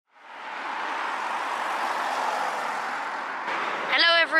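Steady rush of road traffic, fading in over the first half-second.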